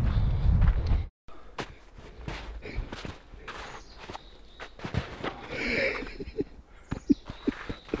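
A low rumble for about the first second, cut off abruptly, then irregular crunching footsteps in snow as a hiker walks.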